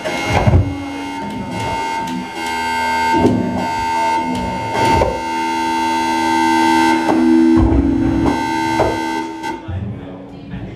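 Live electronic music from a tabletop rig: several held, droning tones layered with irregular low thuds. It cuts off abruptly near the end, leaving room chatter.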